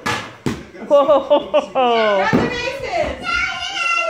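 Two sharp knocks about half a second apart, then children squealing and yelling excitedly, with rising shrieks and a long, high held shout near the end.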